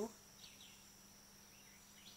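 Faint outdoor background: a steady high-pitched insect drone, with a few faint chirps about half a second in.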